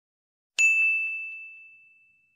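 A single bright bell-ding sound effect for a notification bell. It strikes about half a second in and rings out, fading over nearly two seconds.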